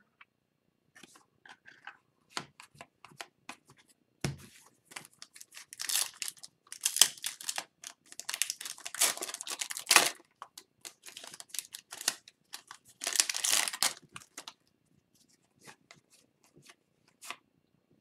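Foil wrappers of 2021-22 Upper Deck Series 1 hockey retail packs being torn open and crinkled by hand, with trading cards slid and shuffled between the fingers. Irregular crackling rustles come in spurts, busiest through the middle and again about two-thirds of the way in, with small clicks scattered between.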